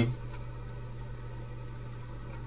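A short pause between spoken words. Only a steady low hum and a faint hiss of room noise are heard.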